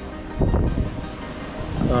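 Soft background music, with a brief low rumble of wind noise on the microphone about half a second in.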